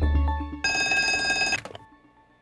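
Background music fades out, then a telephone rings once, about a second long, and dies away.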